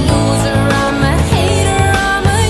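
Recorded pop music playing at a steady loudness, with a strong bass line and a melody that bends in pitch.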